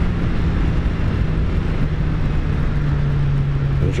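Kawasaki Z900's inline-four engine running steadily under way, with wind and road noise; the engine note drops a step near the end as the bike eases off.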